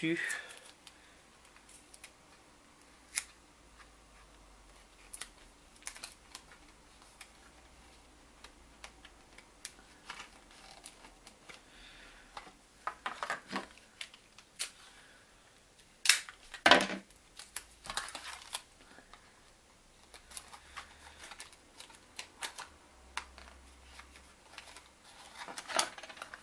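Thin cardboard and sticky tape being handled: scattered light clicks and rustles as the folded sides are pressed together and taped, with two louder bursts a little past the middle.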